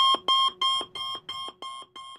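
Electronic alarm-like beeping, about three beeps a second, each fainter than the last so the sequence fades away.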